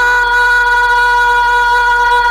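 A boy's singing voice holding one long, steady high note at the end of a line of a naat, sliding up into it and sustaining it without a break.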